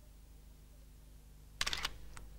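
A single-lens reflex camera's shutter firing once: a short, sharp clattering click about one and a half seconds in, over a faint low hum.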